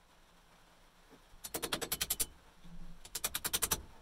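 Two quick runs of light hammer taps on a bent steel flat-bar ring clamped in a bench vise, about ten sharp metallic taps a second, the first starting about a second and a half in and the second about three seconds in.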